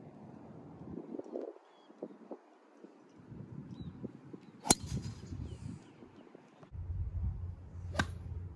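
A golf club strikes the ball on a full swing, a single sharp crack a little past halfway through. After it, and then after a sudden change in the sound, a steady low rumble of wind on the microphone.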